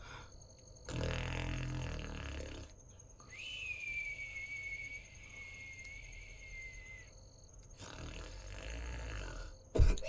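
Harsh, low growling noise in two stretches, with a thin, high squeal held for about three and a half seconds between them that falls slightly in pitch. A sharp click comes near the end.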